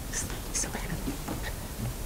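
Quiet, indistinct whispering and low talk over a steady room hum, with a couple of short hissing 's' sounds early on.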